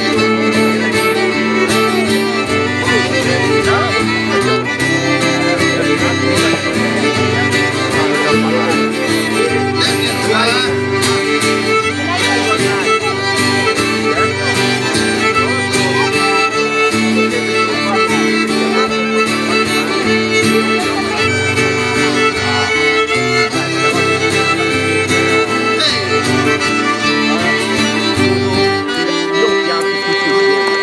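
A live Cajun band plays an instrumental passage. Fiddle and a small diatonic Cajun button accordion carry the tune over acoustic guitar, at a steady level throughout.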